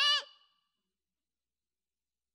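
A man's amplified voice trails off at the end of a word in the first half-second, then dead silence follows.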